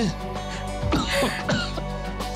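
A man clearing his throat and starting to cough, performed as a sick character's cough, over soft background music with sustained tones.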